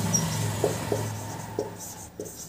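Marker pen writing on a whiteboard: a few short strokes of the tip against the board, over a steady low hum.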